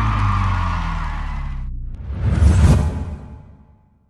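Teaser outro sound design: a low sustained musical tone that sinks slowly in pitch and fades. About two seconds in, a whoosh effect swells, peaks near the three-second mark and dies away.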